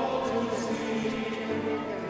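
Choir singing a slow communion hymn, several voices holding long notes together.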